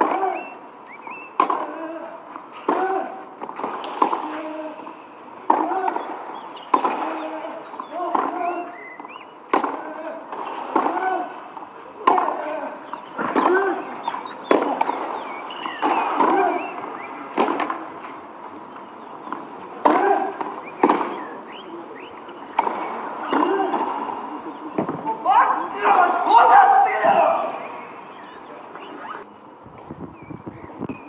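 A long baseline tennis rally on clay: racket strikes on the ball come about every second and a half, some twenty shots, each with a short grunt from the player hitting. Near the end the rally stops and a louder shout or outburst of voices follows.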